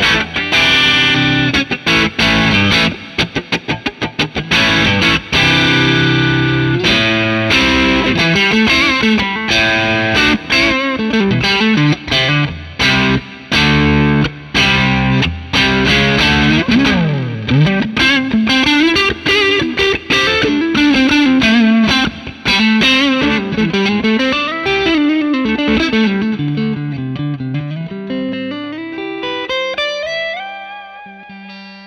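Electric guitar (Fender Stratocaster) played through a Wampler Pantheon Deluxe dual overdrive pedal into a Fender '65 Twin Reverb amp, giving an overdriven rock tone. Choppy, stop-start chord riffs fill the first half, then single-note lead lines with bends follow, fading out near the end.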